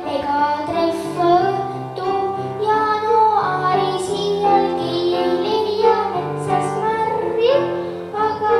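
Young girl singing a children's song in Estonian into a microphone, over instrumental accompaniment.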